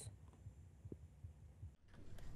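Near silence: faint low room tone, with a brief drop-out just before the end.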